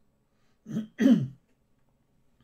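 A man clearing his throat: two short vocal bursts about a second in, the second one louder.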